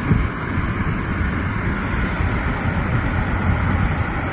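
Wind buffeting a handheld microphone outdoors, a steady low rumbling noise with some hiss above it.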